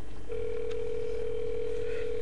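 Telephone ringback tone: a single steady ring, starting about a third of a second in and lasting about two seconds. It is the sign of a call ringing at the other end and not yet answered.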